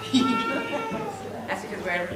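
A high voice holds one long, slightly wavering call for about a second, followed by scattered low voices.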